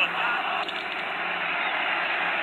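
Sound of a televised American football game playing from a TV: a commentator's voice briefly at the start, then a steady crowd noise.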